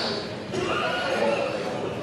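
A person's high, drawn-out yell carrying across a hall during a wrestling match, held for over a second from about half a second in, over the murmur of the crowd.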